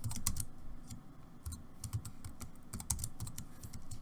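Computer keyboard keys clicking: a quick run of keystrokes in the first second, then scattered single taps, as lines of code are copied and pasted.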